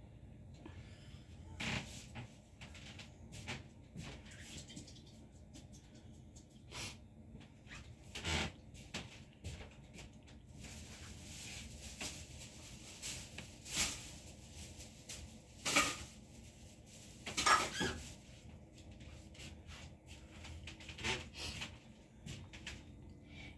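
Quiet background with scattered short, soft clicks and knocks.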